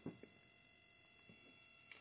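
Near silence: room tone with a few faint steady high-pitched tones.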